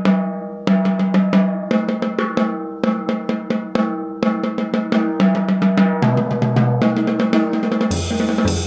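Snare drum on a jazz drum kit playing a triplet lick of single strokes, left-hand diddles and accents, the drum ringing between strokes. About six seconds in, a lower drum joins the phrase.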